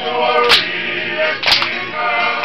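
Group of voices singing a Tongan kava-club song. A sharp crack marks the beat about once a second.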